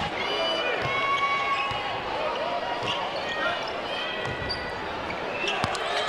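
A basketball being dribbled on a hardwood court, heard as a few faint bounces under the steady murmur of an arena crowd.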